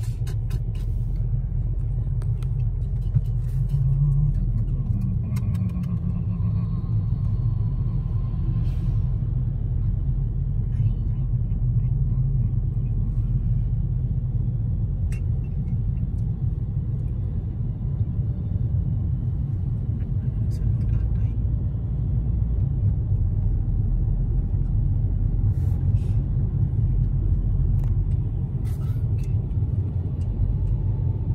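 Steady low rumble of road and engine noise heard from inside a moving car's cabin, with a few faint clicks scattered through it.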